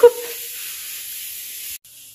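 Steady sizzling hiss of food cooking in a pan on the stove, which cuts off abruptly near the end.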